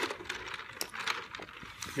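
A person sipping a drink close to a phone's microphone, with a few faint clicks and handling noises.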